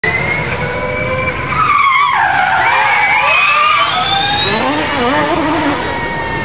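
Audi S1 Hoonitron electric race car's motors whining under hard acceleration, with its spinning tyres skidding and squealing. The whine dips about two seconds in, then climbs steadily for about three seconds before levelling off.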